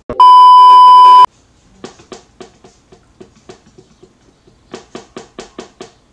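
Loud, steady test-tone beep of the kind laid over TV colour bars, lasting about a second and cutting off suddenly. Then a run of faint light taps, about four a second, coming quicker near the end.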